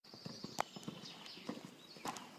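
A few faint, irregular clicks and knocks over a quiet background, the clearest just over half a second in and about a second and a half in.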